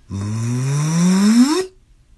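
A person's voice making a wordless vocal sound whose pitch climbs steadily for about a second and a half, then stops.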